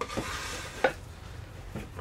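Plywood boards being set into a wooden corner-clamp jig on a workbench: a light scraping of wood sliding on wood, with a small click near the start and a sharper knock a little under a second in.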